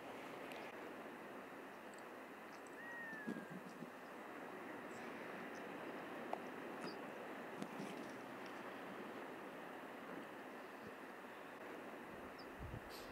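Faint, steady outdoor background hiss, with a single short, thin whistled call that falls slightly in pitch about three seconds in, and a few light scattered clicks.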